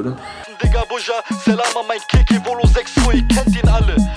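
Hip hop track: a rapped vocal over deep, booming bass-drum hits, starting about half a second in.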